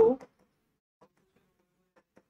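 A man's voice finishing a word, then near silence with a faint tick about a second in and another near the end: a stylus tapping the screen of an interactive whiteboard while writing.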